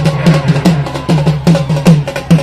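Drums beaten in a fast, steady rhythm of about five strokes a second, with deep booming strokes.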